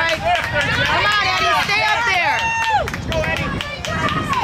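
Spectators shouting encouragement to runners going past, several high voices overlapping for the first three seconds or so, with the runners' footsteps on the dirt trail.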